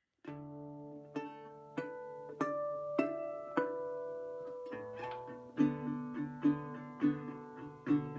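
1936 National metal-bodied resonator guitar fingerpicked solo. Notes ring out about every half second at first, then settle into a quicker, steady fingerpicked pattern from about halfway through.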